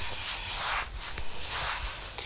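A cloth scrubbed back and forth by hand over a hard floor, in repeated rubbing strokes of about two a second.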